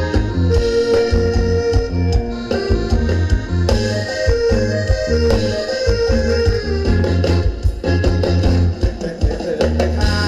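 Live band playing instrumental ramwong dance music: a steady bass-and-drum beat under a held melody line.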